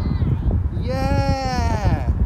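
A toddler's high-pitched voice calling out one long, drawn-out sound of about a second, dropping in pitch as it ends, over the low rumble of car road noise.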